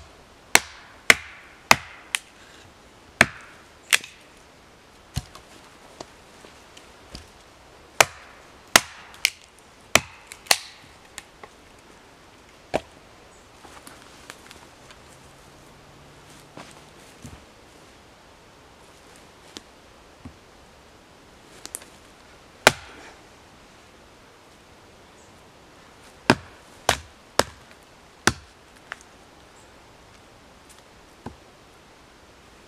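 Hatchet blows splitting short logs into quarters on a stump chopping block, to make fuel wood. The chops are sharp and come in runs of several, with pauses between while the pieces are set up again.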